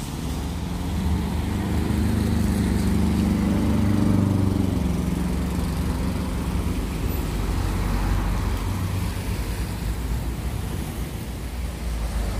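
Road traffic going round a busy town-centre roundabout: a steady rumble of car engines that swells as a vehicle passes close, loudest about four seconds in.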